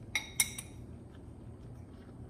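A metal spoon clinks twice against a ceramic bowl about half a second apart near the start, with short ringing tones. After that there is only quiet room tone.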